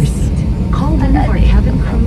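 Steady low rumble of an airliner cabin with its engines running before takeoff, with a voice speaking over it about a second in.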